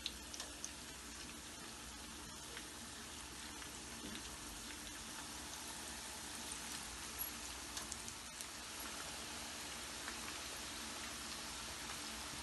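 Battered potato wedges frying in hot oil in a frying pan: a faint, steady sizzle with a few small pops and crackles scattered through it.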